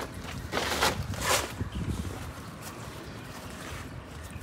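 Movement noise from a person shifting position: a few short scuffing or rustling sounds in the first second and a half, over a low wind rumble on the microphone.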